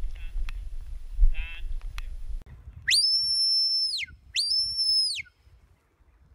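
Wind rumble on the microphone with a sheep bleating, then two shepherd's whistle commands to a working sheepdog, each a high note that rises, holds and falls away, the second shorter. The whistle is a signal meaning go to the right.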